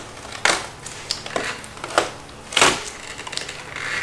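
Hardened fiberglass layup and the plastic film beneath it crackling and crunching in a series of sharp bursts as it is flexed and worked loose from a car fender.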